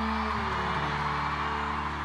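Live pop-ballad band accompaniment holding sustained chords as the song closes, moving to a new chord about half a second in, with audience cheering and screaming underneath.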